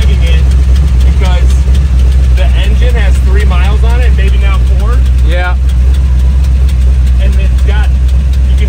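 A Batman Tumbler replica's engine idling, a steady low drone heard from inside the open cockpit.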